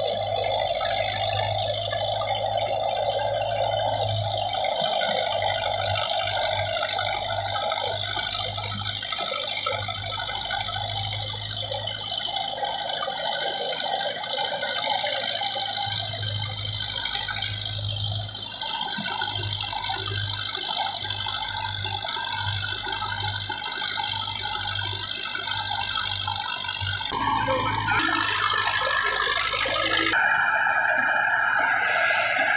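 Belarus 510 tractor's diesel engine running under load, driving a wheat thresher: a steady mechanical run with a whine and rattle from the threshing drum. The sound changes abruptly near the end.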